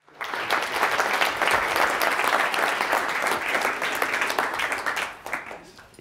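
An audience applauding, starting suddenly and dying away near the end.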